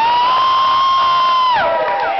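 A single high voice swoops up and holds one long high note for about a second and a half, then drops away.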